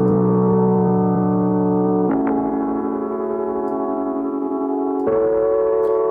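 Sampled piano chord loop played back in Ableton Live's Tones warp mode, a grain-style time-stretch that lends it a warm, cut-up character. The sustained chords change about two seconds in and again about five seconds in.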